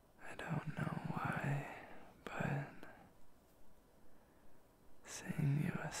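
A man whispering softly in three short phrases, with pauses between.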